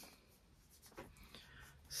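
Near silence, with a faint tick about a second in and a few softer ones after it as a paper craft piece is handled.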